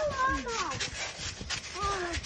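A child's wordless vocal sounds that slide up and down in pitch, in the first part and again near the end, like a pretend animal call. Under them are repeated light thuds of bare feet bouncing on a trampoline mat.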